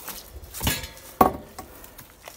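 Cresswell Fold-It folding bicycle being turned around by hand, its parts rattling: two short metallic clanks, the sharper one just over a second in.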